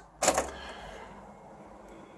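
Sanyo VTC9300P Betacord Betamax VCR: a front piano-key control is pressed with a sharp mechanical clunk, followed by a quieter steady whir from the tape transport mechanism.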